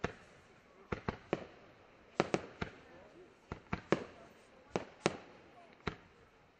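Aerial firework shells bursting in the sky: about a dozen sharp bangs in irregular clusters of two or three, each followed by a short echoing tail.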